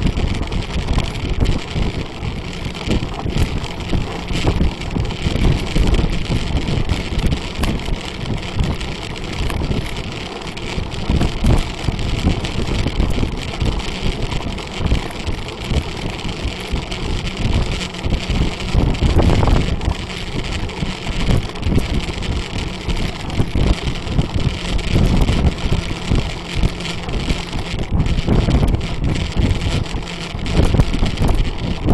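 Wind buffeting the microphone of a camera on a moving bicycle: a loud, gusty low rumble that rises and falls irregularly.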